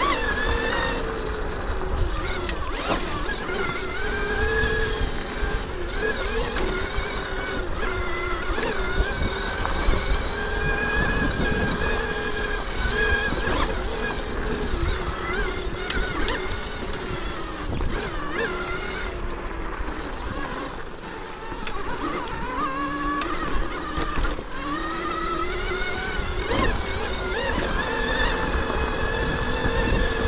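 The electric motor of a Throne Srpnt electric dirt bike whining while ridden, its pitch rising and falling with throttle and speed. Under it are a low rumble and occasional clicks and rattles from the trail.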